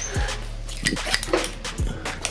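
Light clicking and clinking of plastic plugs and metal terminals knocking together as a bundle of stripped-out wiring-loom wires is picked up and handled.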